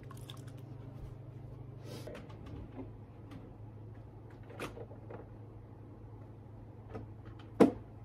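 Scattered light clicks and knocks of small objects being handled and set down, over a steady low hum, with one sharper, louder click near the end.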